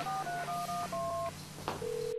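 Touch-tone phone keypad being dialled: a quick run of short two-note beeps, one per key. Near the end a steady call tone starts on the line.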